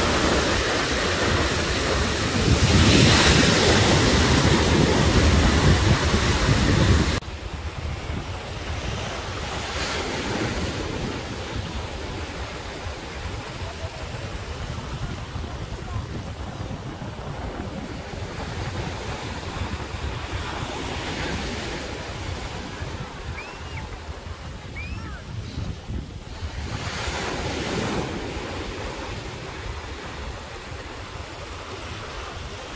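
Small North Sea waves breaking and washing up a sandy beach, with strong wind buffeting the microphone. About seven seconds in, the sound drops suddenly to a quieter, steady wash of surf.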